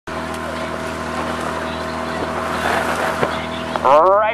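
Outboard motor of a coaching launch running steadily at speed, a constant hum under the rush of water and wind. Just before the end a man's voice starts to call out.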